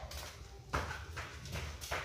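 Footsteps on a bare concrete floor: several light, unevenly spaced steps in the second half.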